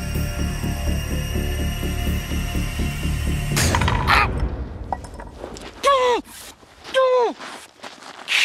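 Suspenseful music with a steady pulsing beat cuts off abruptly about three and a half seconds in, followed by a man crying out in pain from a velvet ant sting: a loud burst, then two sharp yelps, each falling in pitch.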